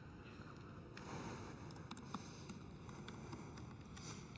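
Faint steady hiss of an open microphone with a few soft, scattered laptop clicks as a password is entered.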